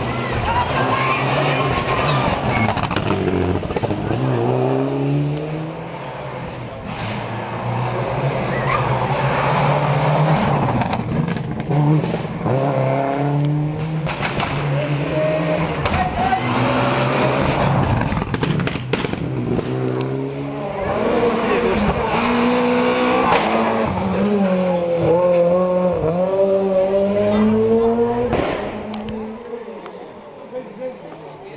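Rally car engine revving hard through repeated gear changes, its pitch climbing and dropping again and again, with scattered short cracks. It is loudest a few seconds before the end, then falls away quickly.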